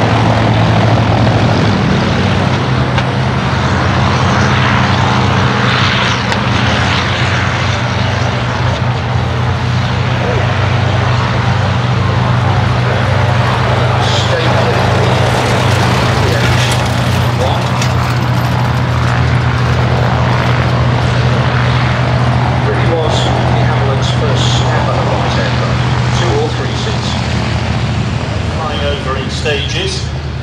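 Radial piston engines of Douglas C-47/DC-3 Dakotas running as the twin-engined aircraft roll past on grass one after another: a loud, steady low drone with propeller noise.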